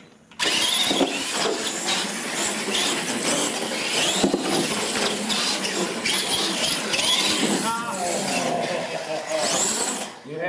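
Radio-controlled monster trucks racing across a hard floor, their motors whining up and down in pitch over tyre and drivetrain noise. It starts abruptly about half a second in.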